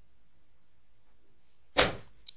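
Quiet room tone from a voice-over recording, then near the end one short, sharp rush of noise, a quick intake of breath just before the narration resumes.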